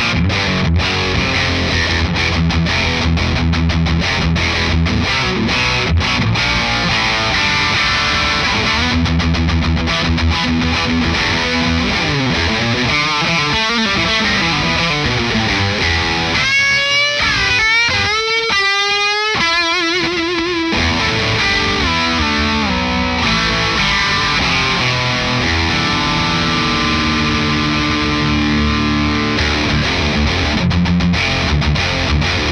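Electric guitar, a Sire S7 HSS, played through the Laney Ironheart Foundry Loudpedal 60W amp pedal on a high-gain distorted sound, playing modern metal licks. Tight, stop-start low chugging riffs alternate with a lead passage of bent notes and wide vibrato about halfway through.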